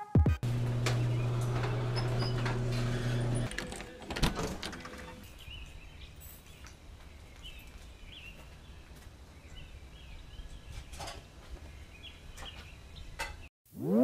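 A steady low hum for the first three seconds or so, then quiet outdoor ambience at first light with faint, scattered bird chirps.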